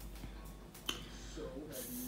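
A single sharp click a little under a second in, with faint speech and a breathy hiss near the end.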